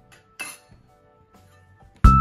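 A single short metallic clink as a stainless steel bench scraper strikes the tabletop, about half a second in.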